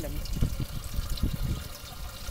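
Water trickling steadily down inside the column of an aeroponic tower garden, with irregular low rumbles on the microphone.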